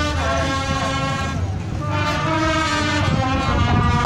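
Marching band's brass horns playing long held notes and chords over a low rumble.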